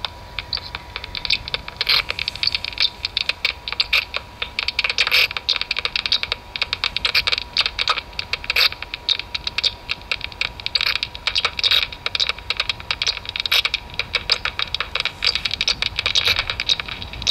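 Bat detector output of common noctule bats echolocating: dense, irregular rapid clicking in clusters of many clicks a second, with a thin steady tone underneath.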